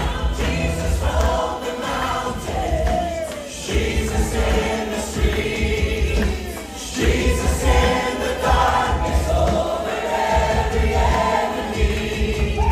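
Live gospel worship music: several singers on microphones singing together over keyboard and electric bass, amplified through the room's speakers.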